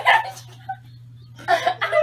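Girls laughing: a shrill burst of laughter at the start, a short lull, then laughter again from about a second and a half in.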